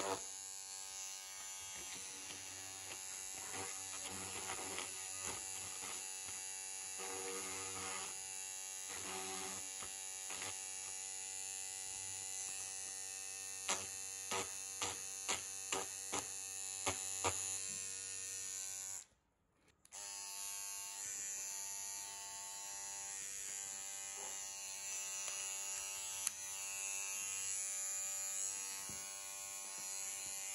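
Beardo PR3058/59 electric beard trimmer running with a steady buzz, its blades pressed against the edge of a sheet of paper. A run of sharp clicks comes near the middle as the blades bite the paper. The buzz cuts out for about a second some two-thirds of the way in, then resumes.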